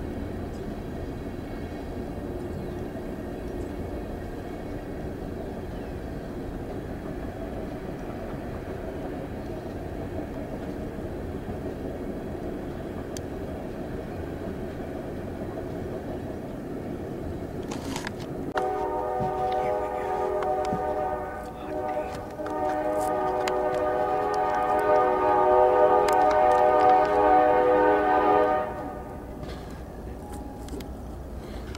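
Coal train cars rolling past with a steady rumble. About 18 seconds in, a locomotive air horn sounds: a blast of about three seconds, a brief gap, then a longer blast of about six seconds that cuts off shortly before the end.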